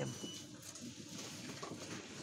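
Faint shop background: room noise with distant, indistinct voices.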